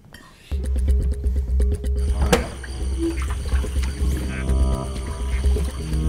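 Background score music: a deep pulsing bass comes in about half a second in, with a sharp hit about two seconds in and held tones building near the end.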